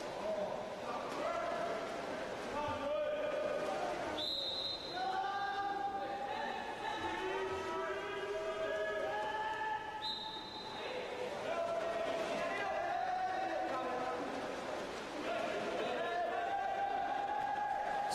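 Indoor pool hall during a water polo game: players' voices calling out and echoing through the hall, with a referee's whistle blown briefly about four seconds in and again about ten seconds in.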